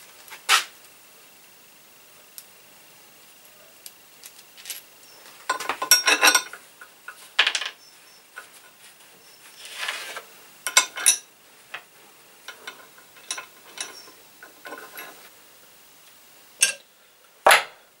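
Spanners, nuts and bolts clinking and knocking as a new electric motor is bolted onto its steel mounting plate: scattered metal clicks and short bursts of clinking with quiet gaps between.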